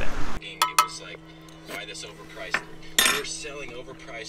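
Spoon and mug clinking: a few light clicks, then a louder clatter about three seconds in. A steady low hum runs underneath.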